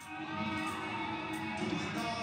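Live band music with a male lead vocal over drums, coming back in full just after the start following a short lull.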